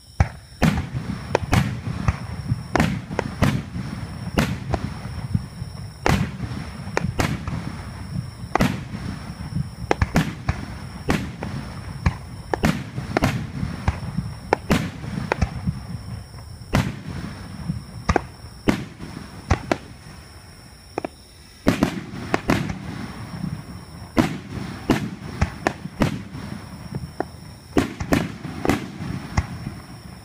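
Aerial firework shells bursting in rapid succession, close up: many sharp bangs, several a second, over a continuous low rumble of launches and bursts. There is a short lull about two-thirds of the way through before the barrage resumes.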